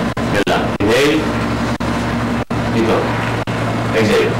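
Indistinct voices over a steady low hum. The sound cuts out briefly several times.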